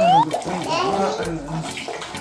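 White rum pouring from a large glass bottle into a glass measuring cup. It splashes with a tone that rises in pitch as the cup fills, then keeps running unevenly.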